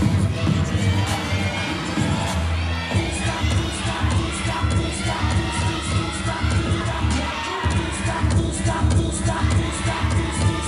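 Audience cheering and shouting over loud performance music with a heavy, repeating bass beat.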